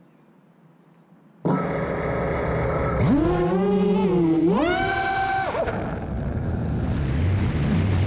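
Six-inch FPV quadcopter's brushless motors (T-Motor F80s) and propellers spinning up suddenly about a second and a half in, then whining up and down in pitch with the throttle as the quad takes off and climbs. Heard from the GoPro carried on the frame, so the motors sit close to the microphone.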